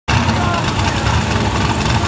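Engine of a lifted, stripped-down Jeep on mud tires running loud and steady, with a heavy low rumble.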